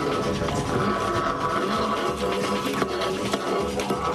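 Background music with held, steady tones.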